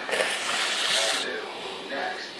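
Soft rubbing, rustling noise of a hand petting a goldendoodle's fur close to the phone's microphone, fading about a second in.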